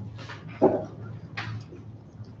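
A woman's voice saying "Good" close to a microphone, about half a second in, over a steady low room hum, with a short hissy rustle about a second and a half in.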